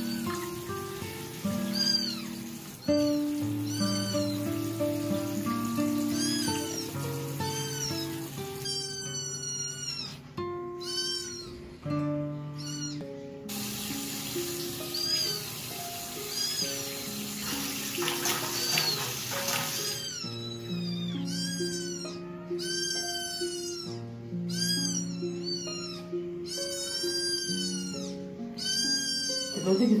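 Newborn kitten mewing over and over, short high cries about one a second, coming thicker and louder in the second half. Background music plays underneath.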